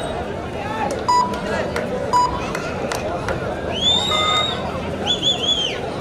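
Crowd of spectators chattering at a kabaddi match, with two short tones early on and several shrill whistles, rising then falling, in the second half.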